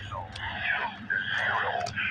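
Freight train rolling past: a steady low rumble with a hazy, scraping mid-pitched noise over it and a few faint clicks.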